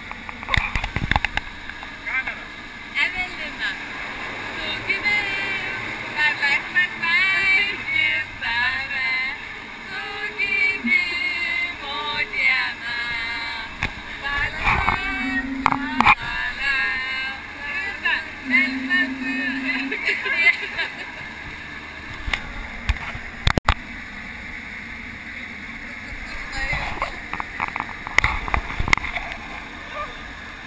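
Voices talking and laughing over the steady drone of a jump plane's cabin in flight.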